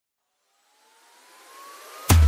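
Electronic riser opening a dance remix: a hiss of noise fading in from silence and growing steadily louder, with a faint tone gliding slowly upward through it.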